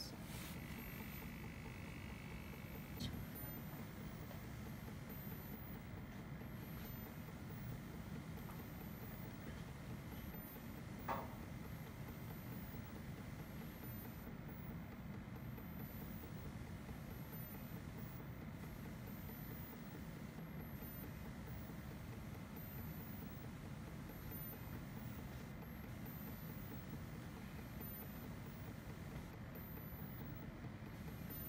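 Steady, faint low hum with a thin high whine from a syringe pump's motor pushing fluid into a microfluidic chip. A short higher whine comes in the first few seconds, and there are two faint clicks, about 3 and 11 seconds in.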